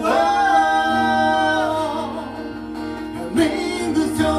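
Two men singing a song in Japanese with acoustic guitar accompaniment; a long held note about a second and a half, fading away, with a fresh phrase starting near the end.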